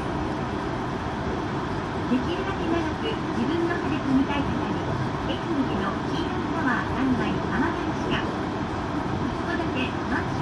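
Steady running noise inside the cabin of a Nippori-Toneri Liner 330-series rubber-tyred automated guideway train, with indistinct voices talking throughout.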